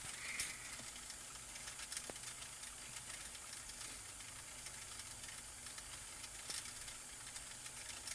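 Faint, steady hiss of background noise with a few soft ticks, between stretches of speech.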